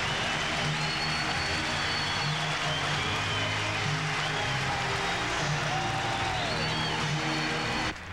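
Ballpark crowd giving a standing ovation, steady applause and cheering with music playing underneath.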